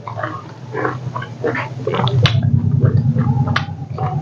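Close-miked eating by hand: wet chewing and lip-smacking with many sharp clicks, over a low hum that grows louder after about two seconds.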